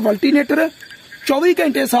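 A man speaking in a loud, high-pitched, strained voice, with a brief pause in the middle.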